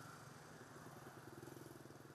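Faint street traffic: small motorbike engines running as they ride past, a steady low pulsing drone.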